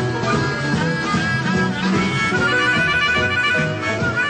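Blues band playing, with a harmonica carrying a lead line of held notes and a quick run of repeated short notes about halfway through.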